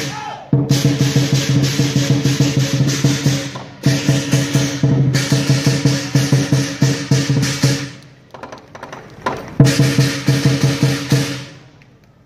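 Lion dance percussion ensemble of drum, cymbals and gong playing a fast, driving rhythm with ringing metal tones. It breaks off briefly a few times, goes quieter for a moment, then comes back with a loud accented hit about nine and a half seconds in.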